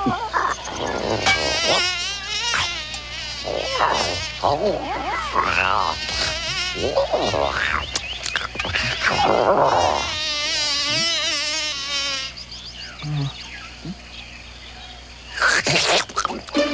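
Baby dinosaur creature's vocal sound effects: a run of high, warbling, trilling chirps and coos with a fast quaver, loudest in long stretches about two seconds in and again about ten seconds in. The calls fall quieter for a couple of seconds before a loud call near the end.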